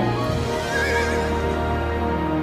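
A horse whinnies once, a short quavering call a little under a second in, over sustained orchestral film score.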